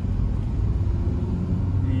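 Steady low rumble of engine and road noise heard inside the cabin of a Hyundai Accent 1.5L as it drives along.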